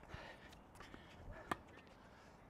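A tennis racket strikes the ball once on a sliced lob, a single sharp pop about one and a half seconds in. A much fainter tap comes near the start.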